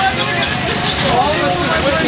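Indistinct voices talking over a steady low background rumble.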